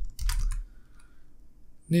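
Computer keyboard typing: a quick cluster of keystrokes in the first half second, then a few faint key clicks.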